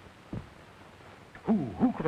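A man's voice starts speaking near the end, two falling syllables over the steady hiss of an old film soundtrack. A short low thud comes about a third of a second in.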